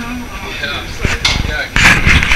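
A few hard knocks from ski boots and carried skis on the elevator floor as skiers step out: one sharp knock about a second in and a louder one near the end, with a word of speech at the start.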